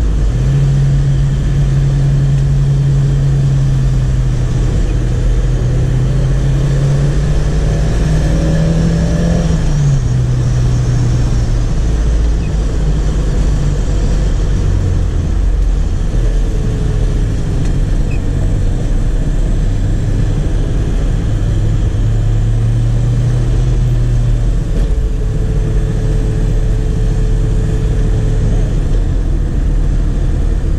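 A 1989 Chevrolet Chevette 1.6 SL's four-cylinder engine being driven, heard from inside the cabin over steady road noise. The engine note climbs slowly, drops suddenly about ten seconds in, then rises again and falls off about two-thirds of the way through.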